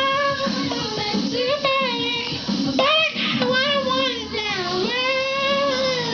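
A high singing voice holding long, wavering notes that slide between pitches, with music underneath.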